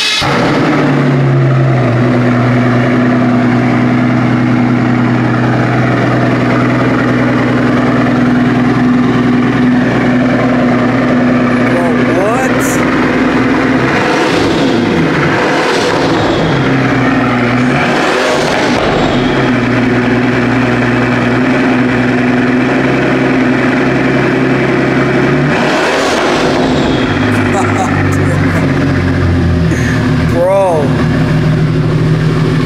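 Pagani hypercar's V12 engine running at a loud idle just after start-up. A run of short revs comes about halfway through, and another blip comes near the end.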